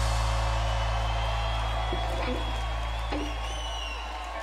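A live country band's final held chord ringing out and slowly fading, with the crowd cheering and a long high whistle over it in the second half.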